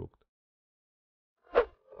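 Dead silence between narrated lines, with a short breath-like voice sound about one and a half seconds in.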